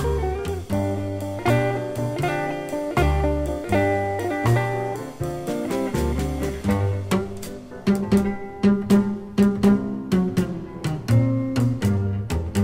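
Instrumental stretch of a small 1950s blues band recording with no singing: a double bass walks steadily beneath guitar, and sharp repeated hits come in from about the middle onward.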